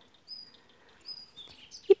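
A small bird chirping outdoors: a few short, high whistled notes about a second apart.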